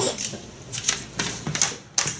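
Sheets of paper being handled and shuffled: a string of short, crisp rustles and crinkles.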